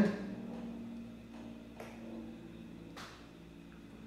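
Quiet room tone with a faint steady hum and two soft clicks about a second apart.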